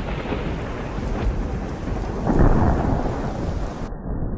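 Thunder rumbling over steady rain, the rumble swelling loudest a little past halfway.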